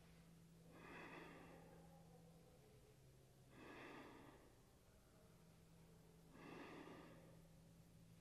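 Faint, slow, deep breaths of a man holding a wheel-pose backbend: three long breaths about three seconds apart.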